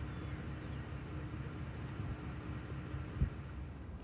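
Low, steady rumble of a vehicle heard from inside its cab, with a faint hum and one brief soft knock a little after three seconds in.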